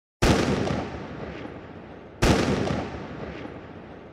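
Two loud booming hits about two seconds apart, each sharp at the start and dying away in a long echo over about two seconds: a sound effect for the closing logo reveal.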